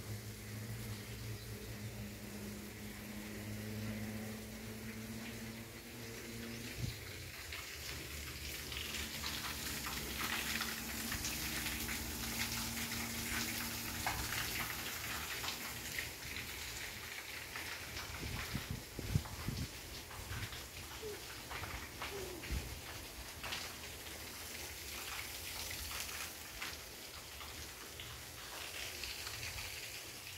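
Outdoor ambience: a steady rushing hiss with scattered crackles and clicks. A low, steady hum with several pitches runs under it for about the first seven seconds, then fades.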